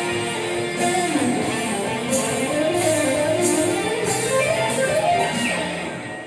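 Electric guitar playing an improvised lead solo: held notes with bends and slides in pitch.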